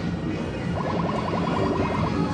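Arcade din with electronic machine music, and a fast run of short electronic beeps from just under a second in to the end.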